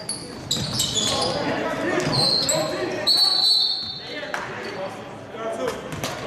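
Basketball game play on a hardwood court: sneakers squeaking in short high streaks, a ball bouncing and players' voices, echoing in a large gym.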